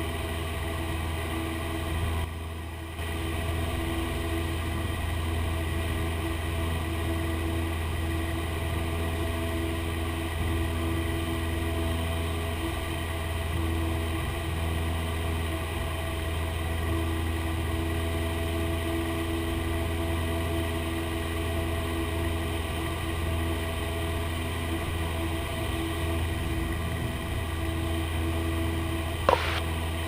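Cessna 172P's Lycoming O-320 four-cylinder engine and propeller droning steadily at climb power, heard inside the cabin, as the plane climbs out slowly in thin air at a density altitude of about 7,900 ft. The level dips briefly about two seconds in.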